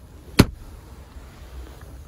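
A single sharp click from the pickup's center console storage lid being handled, then a faint low rumble.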